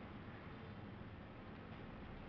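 Faint, steady background hiss: room tone with no distinct sound.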